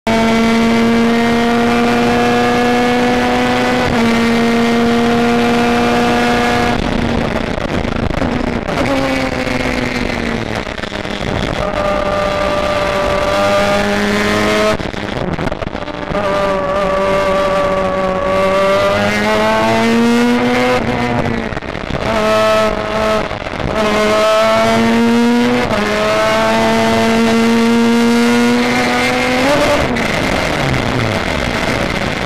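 Race car engine running hard on track, its pitch climbing and dropping repeatedly through gear changes and lifts, with brief breaks where the throttle comes off.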